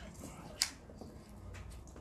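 One sharp click a little after half a second in, over faint low background noise.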